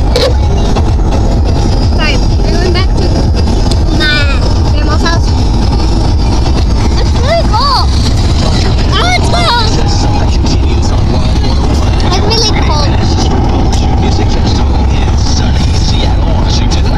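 Steady low rumble of a moving car, heard from inside the cabin, with children's high-pitched voices rising and falling over it at times.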